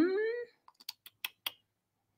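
Four quick taps on computer keyboard keys over about a second.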